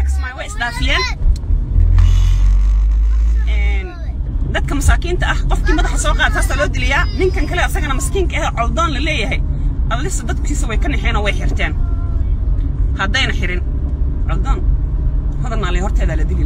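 A woman talking animatedly inside a car, with the car's steady low cabin rumble under her voice.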